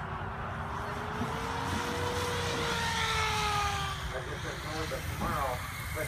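Electric SAB Goblin 700 KSE RC helicopter whining, its pitch rising a little and then falling through the later seconds as it comes down and lands. Wind rumbles on the microphone throughout.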